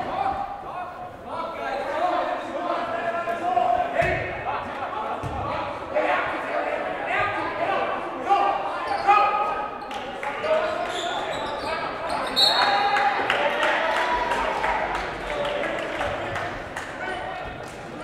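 Echoing gym sounds of live basketball play: players and spectators calling out and shouting, with a basketball being dribbled and occasional knocks on the hardwood floor.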